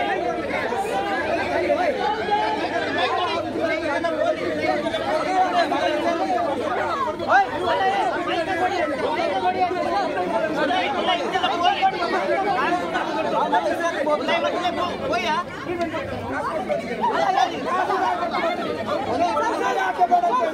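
A packed crowd of protesters and police talking and shouting over one another: a loud, unbroken babble of many voices in an uproar.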